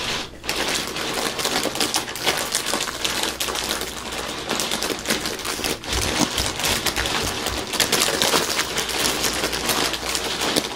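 A crinkly plastic bag of caramel rice crisps being squeezed and handled: dense, continuous crinkling and crackling, with a few duller thumps of handling about six to eight seconds in.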